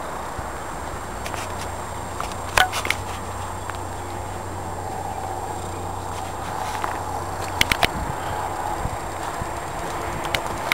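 Steady outdoor background noise with a low hum, broken by a few sharp clicks: one about two and a half seconds in and three close together near eight seconds. These are the footsteps and handling noise of someone walking with a handheld camera.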